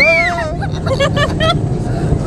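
A young child's high-pitched squeal of delight that rises and falls, then short bursts of giggling about a second in, over a steady low rumble.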